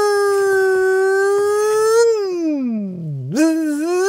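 A man's long drawn-out vocal howl, "læææ", held on one pitch for about two seconds, then sliding down low and rising again to hold near the end.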